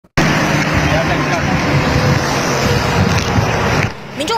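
Wind buffeting a phone microphone outdoors: a loud, steady rushing noise with low rumble and faint voices underneath, starting abruptly and cutting off just before the end.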